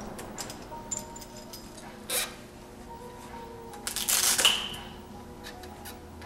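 Light clicks and knocks of a recumbent trike's front wheel, axle and springs being handled, with a short scrape about two seconds in and a louder rustling scrape around four seconds, ending in a brief metallic ring.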